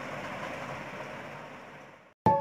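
Steady low background noise, room tone, with no distinct event, fading out near the end.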